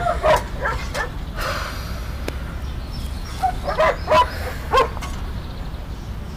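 A dog giving a few short yips, a couple in the first second and several more between about three and a half and five seconds in.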